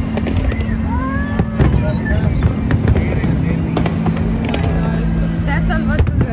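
Fireworks display going off: frequent sharp cracks and crackle over a continuous low rumble, with a few whistling glides. Voices and music with sustained low notes are mixed in.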